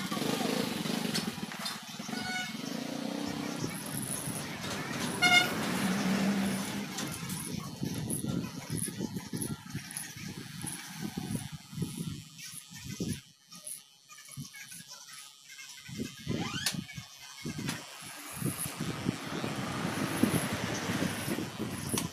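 Outdoor street noise: passing traffic with voices in the background, and a short pitched, pulsing tone about five seconds in.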